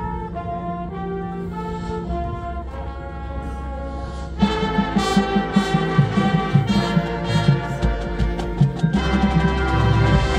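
High school marching band playing: a softer brass passage of held notes, then about four and a half seconds in the full band comes in louder with rhythmic percussion hits.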